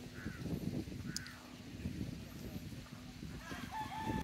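Faint outdoor ambience: a low rumble with a few short, distant bird calls, two within the first second and a half and a brief rising call near the end.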